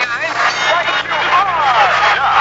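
People's voices making drawn-out, sliding vocal sounds rather than clear words, with one long falling glide in pitch about a second in.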